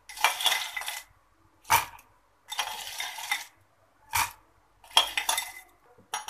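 A metal spoon scraping and clinking in a ceramic bowl as ice is scooped into a glass jug, in three short spells with two sharp knocks between them.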